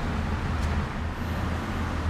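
Steady low vehicle rumble with an even background hiss, with no sudden sounds.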